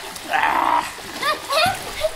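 Swimmers splashing and kicking in a pool, with a high-pitched voice giving two short rising calls in the second half.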